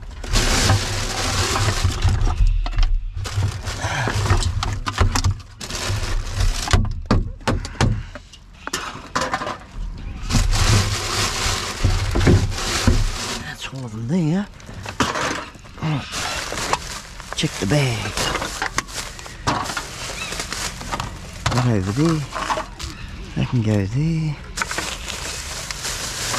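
Plastic bags and a cardboard box of rubbish rustling and crinkling as they are rummaged through and lifted inside a bin, in uneven bursts.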